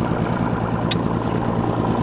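Outboard motor idling steadily, a low even hum, with a single sharp click about a second in.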